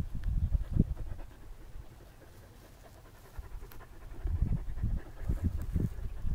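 Rough collie panting close to the microphone in quick breaths, fading for a second or so in the middle and picking up again.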